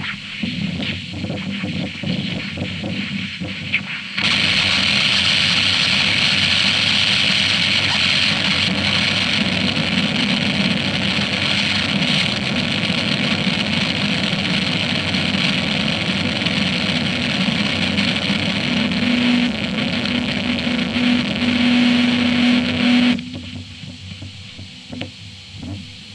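Harsh noise music. Choppy, crackling low noise runs for about four seconds, then a dense hiss-heavy block of noise starts suddenly and holds steady. A low hum-like tone enters near the end, and the noise cuts off abruptly about a second before the end.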